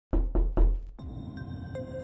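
Three quick knuckle knocks about a quarter second apart, then faint music with a few held tones.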